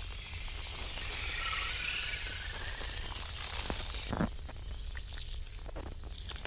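Horror film soundtrack of distorted, static-like noise over a steady low hum, with a few sharp crackles in the second half.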